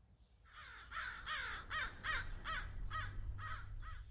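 A bird calling a fast run of about nine loud, harsh calls, roughly three a second, starting about half a second in.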